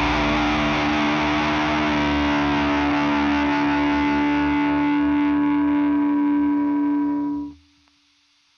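Distorted electric guitar in a hardcore/screamo recording, one chord held and ringing steadily through effects, then cut off suddenly about seven and a half seconds in.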